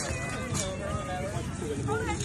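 Indistinct talk of several people nearby, too unclear to make out words.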